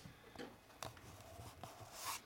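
Faint scratching and scuffing of a kitten's claws on a carpeted scratching-post base: a few short, irregular scrapes.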